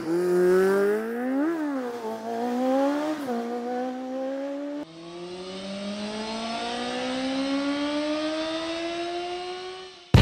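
Engine revving up and back down twice. After an abrupt cut about five seconds in, it accelerates steadily with a long rising pitch.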